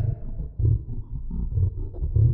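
A deep, growling roar in four or five low rumbling pulses.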